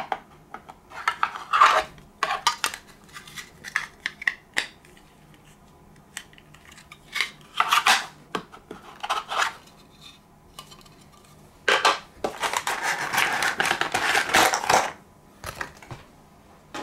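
Plastic parts of a model airliner's display stand and its packaging being handled: scattered clicks, taps and light scrapes of plastic on plastic, then a longer rustling scrape lasting about three seconds near the end.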